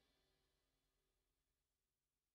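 Near silence: the last faint trace of a blues track's fade-out dies away within the first half-second.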